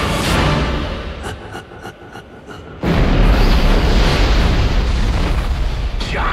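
Trailer music drops away to a few soft ticks, then a sudden loud boom nearly three seconds in opens a loud, sustained deep rumble under the music.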